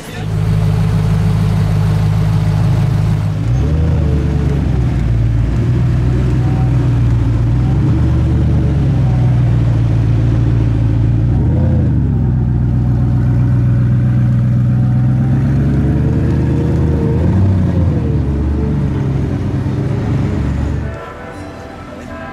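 Koenigsegg V8 engine running loud and steady at idle, with a few brief rises and falls in pitch. It cuts off abruptly near the end.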